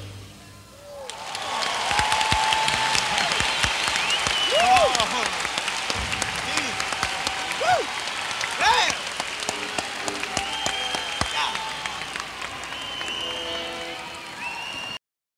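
Concert audience applauding and cheering at the end of a song, with shouts and whistles rising and falling over the clapping. The last note of the music dies away just before the applause swells, about a second in.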